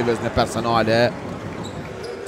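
A man's voice speaking during the first second of a basketball game, with a sharp knock of a basketball bouncing on the court about half a second in; quieter in the second half.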